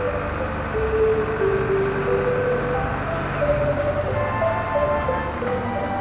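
Background music, a slow melody of held notes, over the low running of a small Hino city bus engine as the bus pulls in.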